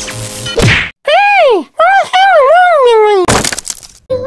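Cartoon sound effects: a sharp whack, then a high-pitched cartoon voice swooping up and down for about two seconds, cut off near the end by a loud crash.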